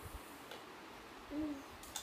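Quiet room tone with a short, low hummed "mm-hmm" from a person about two-thirds of the way in, and a light click at the very end.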